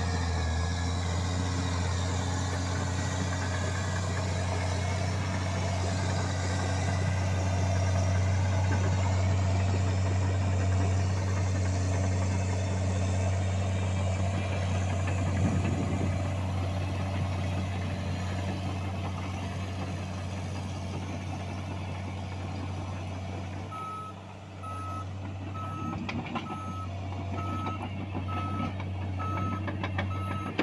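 A John Deere 750J-II crawler dozer's diesel engine runs steadily under load as the machine works dirt with its blade. About three-quarters of the way through, the engine note drops briefly, then the reversing alarm starts beeping about one and a half times a second as the dozer backs up.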